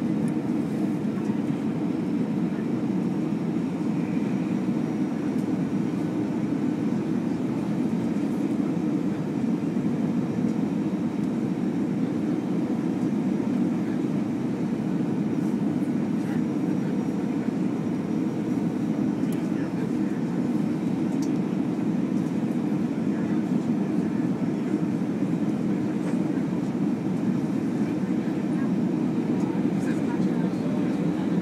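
Steady low rumble of engine and airflow noise heard inside the passenger cabin of an Airbus airliner, unchanging throughout.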